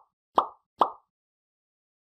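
Three short pop sound effects in quick succession, about half a second apart, each sharp at the onset and dying away fast. They are cartoon-style pops for on-screen icons popping into view.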